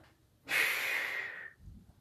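A lifter's sharp, forceful breath through the mouth and nose during a barbell bench press rep. It starts suddenly about half a second in and fades over about a second. A faint low thud follows near the end.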